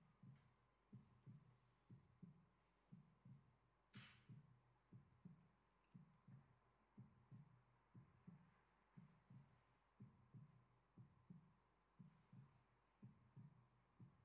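Faint low thumping in a steady, heartbeat-like paired rhythm, about two to three beats a second, with one short hiss about four seconds in.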